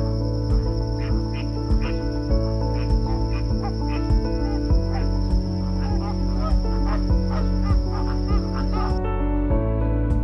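Soft background music with sustained notes over a steady deep bass. Under it, birds call again and again in short chirps, and a steady high-pitched whine stops about a second before the end.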